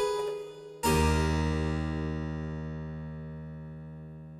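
Roland C30 digital harpsichord, voiced with its French harpsichord sample set, playing a chord, then a full chord struck about a second in that is held and fades slowly.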